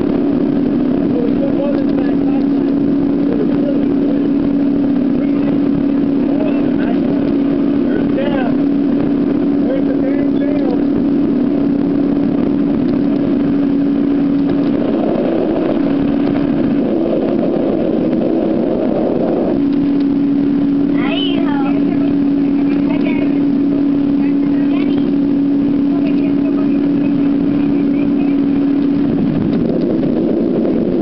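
Motorboat engine running at a steady pitch over wind and water noise. The steady tone breaks off for a few seconds about halfway through, then resumes.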